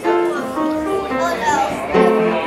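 A group of children singing together, in held notes that step from pitch to pitch.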